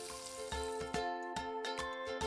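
Plantain slices sizzling as they fry in a pan of oil. The sizzle fades about a second in, as bright music with quick, sharply struck notes comes in.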